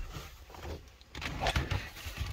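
Low, irregular rumbling and rustling handling noise from a phone being moved around inside a car's cabin, with a brief louder patch about a second and a half in.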